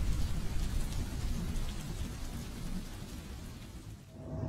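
A steady, rain-like hiss over a low rumble, slowly fading away, with no tune left in it.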